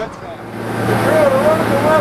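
Steady low hum of a sport-fishing boat's engine, with a voice talking over it from about a second in.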